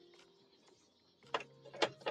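Soft background music. A little over a second in it picks up a clicking, tick-like beat over a low steady tone.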